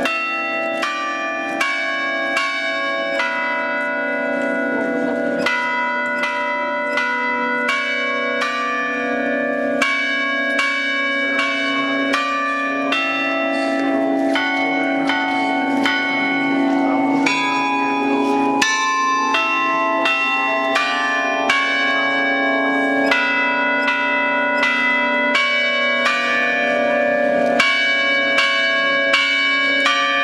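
A set of church bells of different sizes ringing, struck one after another at changing pitches, about three strikes every two seconds, each stroke ringing on into the next.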